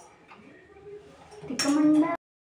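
Faint clinks of utensils against steel pots and dishes, then a voice sounding a held syllable near the end.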